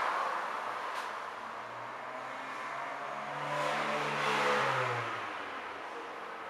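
An engine running, swelling over a couple of seconds to its loudest about four and a half seconds in, then fading away.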